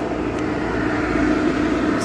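Steady hum of running machinery with a low, even tone: the oxygen-concentrator and air-compressor setup running.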